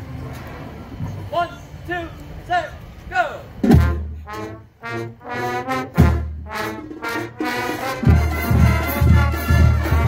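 Marching band brass and drums playing. A series of short swooping calls comes first, then, from about four seconds in, full brass chords land with heavy bass drum hits.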